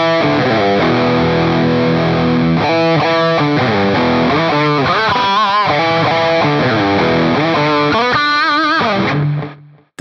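Distorted electric guitar playing a minor pentatonic riff of held notes, with several bent, wavering notes in the middle and later on. It stops and dies away about nine seconds in.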